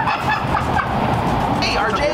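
A woman shrieking in fright at a jump scare: short, shrill cries over background music.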